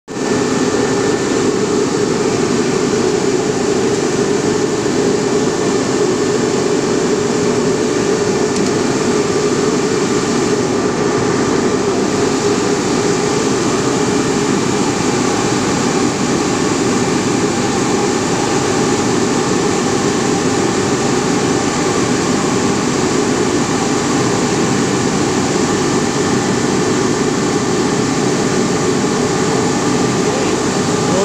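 Ring spinning frame running steadily: a loud, even mechanical hum and whir of the spindles and drafting rollers, with a few faint steady whines above it.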